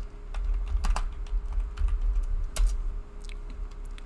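Typing on a computer keyboard: irregular keystrokes in quick runs, with a faint steady hum underneath.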